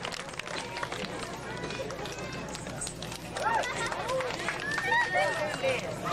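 Indistinct voices of an outdoor crowd chattering. The last scattered claps of applause fade in the first seconds, and the voices grow louder from about halfway through.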